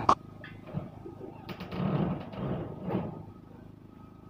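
Light knocks and a rattling, rustling clatter from work on a corrugated metal-sheet roof, busiest in the middle.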